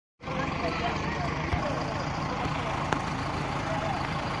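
Diesel tractor engines idling with a steady low rumble, under the chatter of a gathered crowd, with a sharp click about three seconds in.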